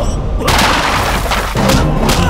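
A heavy crash sound effect with a deep boom about half a second in, as a body is hurled onto a pile of gourds, dying away by about a second and a half. Background score music comes back in near the end.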